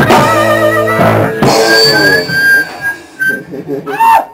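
Live rock band of drums, electric guitar and bass ending a song: loud full-band hits at the start and about a second in, a wavering high held note over them, then the sound dies away after about two seconds.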